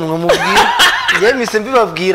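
People talking and laughing, with a short burst of snickering laughter in the middle of the speech.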